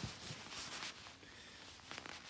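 Faint rustling of a quilted jacket's shell fabric being handled, quieter in the second half.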